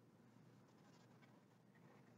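Near silence with faint dry-erase marker strokes on a whiteboard.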